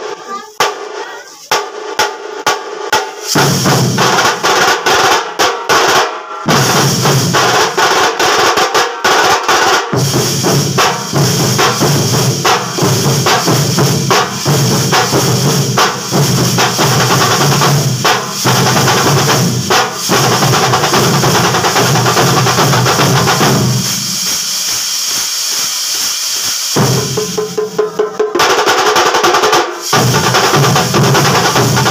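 A vazhipadu melam drum troupe, many drummers beating sticks on white-headed side drums and rope-tensioned barrel drums, playing a fast, loud rhythm together. It opens with a few separate strokes, the whole group comes in about three seconds in, thins out to scattered strokes a few seconds before the end, then builds back to full drumming.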